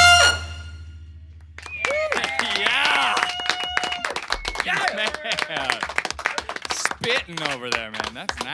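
A brass band cuts off on a final held chord that rings away over about a second. Then the band members whoop, laugh and clap in a small studio.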